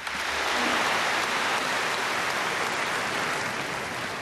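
A large concert-hall audience applauding: dense clapping breaks out at once and holds steady, easing slightly near the end.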